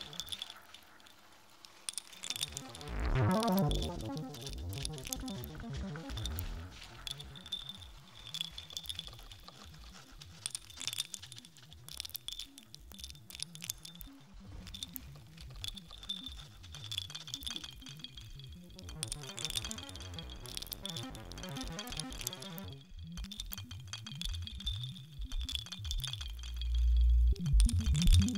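Live electronic music made from processed water sounds: a dense crackle of clicks and rattles over a steady high tone, with sweeping swells about three seconds in and again near twenty seconds. Deep bass swells come in near the end.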